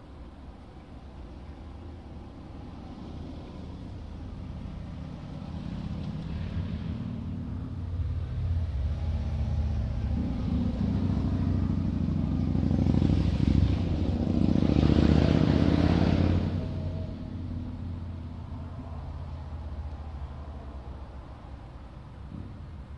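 A motor vehicle passing by: a low rumble that builds over about ten seconds, is loudest about two-thirds of the way in, then fades away.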